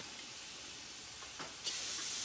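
Aerosol can of Würth brake and parts cleaner spraying in a steady hiss, starting suddenly near the end.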